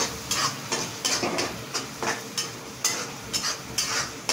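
A spatula scraping and stirring a tomato and onion masala in a black kadai, about three quick strokes a second over a steady sizzle of frying.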